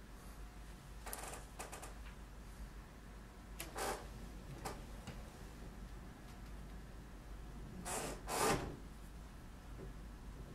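Hands handling and pressing a clay sculpture: a few brief rustling, scraping noises, the loudest pair about eight seconds in, over a faint low hum.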